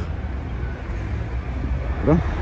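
Steady low rumble of road traffic and vehicle engines running close by.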